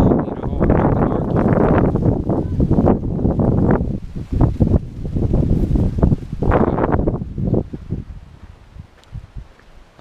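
Wind buffeting a handheld camera's microphone: a rough, gusty rumble with rustling that eases off near the end.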